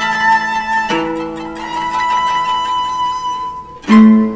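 Instrumental introduction to a shigin recitation: long held tones with plucked string notes over them, a new plucked chord sounding about a second in and another at the very end, and no voice yet.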